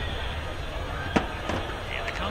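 A single sharp bang about a second in, followed by a fainter one, over a steady low street background.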